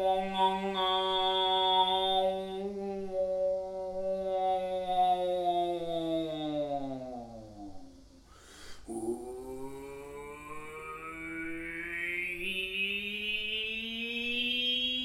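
A man overtone singing: a held, buzzing vocal note with a whistle-like overtone ringing high above it. The note slides slowly down to a low pitch. After a quick breath about eight and a half seconds in, a new low note rises gradually while a bright overtone climbs above it.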